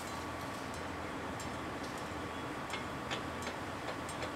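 Steady low hum of machinery at a concrete pumping station, with a few light, sharp metallic clicks as pipe couplings on the concrete pump line are handled.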